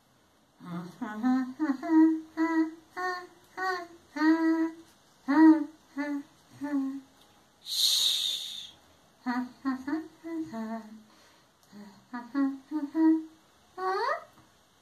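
A woman humming a tune in a run of short, separate notes, with a brief hiss a little past the middle.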